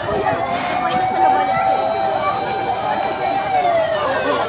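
Fire truck siren wailing: one long steady tone that falls in pitch near the end, over background voices.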